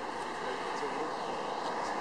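Steady outdoor city background noise, like traffic, with faint voices in the distance.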